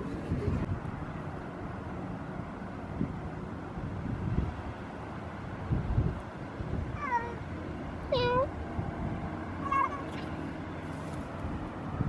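Domestic cat meowing three times in short calls, about seven, eight and ten seconds in; the middle call is the loudest, dipping and then rising in pitch.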